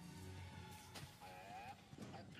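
Faint episode soundtrack: quiet background music, with a short honk from a GNK power droid about halfway through.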